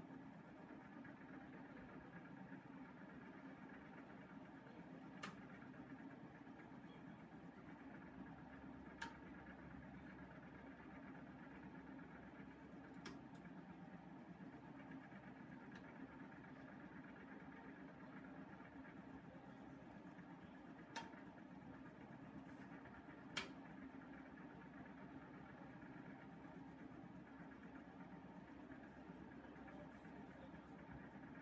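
Bendix 7148 washing machine running its main wash, a faint steady motor hum with a handful of short, sharp clicks at irregular intervals.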